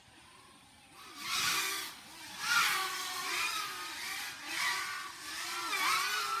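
FPV racing quadcopters in flight: the whine of the brushless motors and propellers rises and falls in pitch as the throttle changes, with the hiss of the props swelling as a quad passes close. The sound starts faint and grows louder about a second in.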